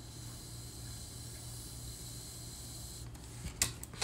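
Low steady electrical hum with faint high hiss, and a few soft clicks near the end.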